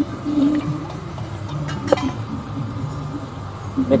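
A low background murmur of faint voices and a steady hum, with one sharp click about halfway through.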